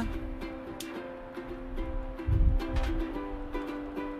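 Background music of plucked string notes, ukulele-like, with a low thump a little past halfway.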